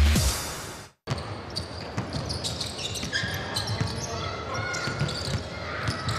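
The tail of a broadcast intro sting fades out in the first second and cuts off, followed by live basketball game sound in an arena: a ball bouncing on a hardwood court with the sharp ticks of play, over the murmur and voices of the crowd in a large hall.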